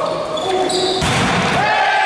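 Indoor volleyball play in an echoing gym hall: a sharp ball strike about a second in, then players shouting as the point is won.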